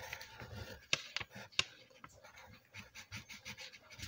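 Wooden pencil drawing on a paper card: faint, irregular scratching, with a few sharp ticks in the first two seconds.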